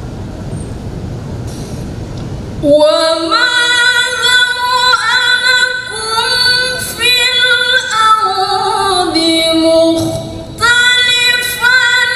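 A woman reciting the Quran in the melodic tilawah style into a microphone. For almost three seconds there is only a low rumbling noise. Then she takes up a long melodic phrase of held, ornamented notes, breaks off briefly about ten and a half seconds in, and resumes.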